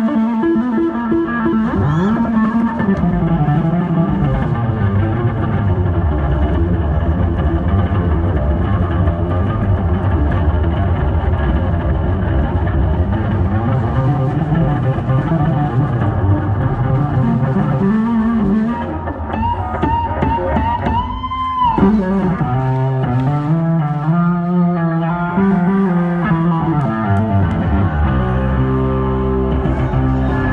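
Live electric bass solo on a Yamaha bass: fast runs of plucked and two-handed tapped notes. About two-thirds of the way through, a long high note is held and bent upward, then breaks off sharply into wavering, vibrato-laden lower notes.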